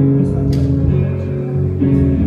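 Live instrumental worship music led by guitar over bass, playing sustained chords that change about a second and a half in.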